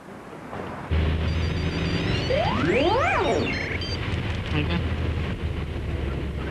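An electronic TV transition sound effect: a fast rising sweep a little over two seconds in, with high electronic bleeps around it, over a steady low rumble that starts abruptly about a second in.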